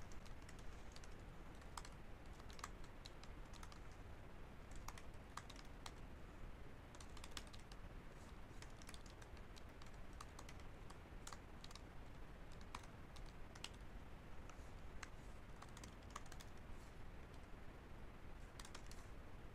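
Faint typing on a computer keyboard: scattered, irregular keystrokes over a low steady hiss.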